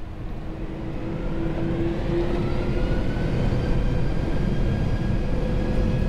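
Boeing 747's four turbofan engines spooling up to takeoff thrust, heard inside the cockpit: a whine that rises slowly in pitch over a growing low rumble, getting louder over the first two or three seconds and then holding steady as the jet starts its takeoff roll.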